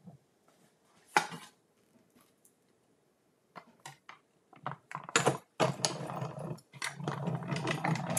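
Plastic cutting plates of a Stampin' Cut & Emboss die-cutting machine being handled and stacked, then pushed into the machine. One sharp click about a second in, a quiet stretch, then a run of clicks from about three and a half seconds that turns into continuous clattering and scraping with a low rumble.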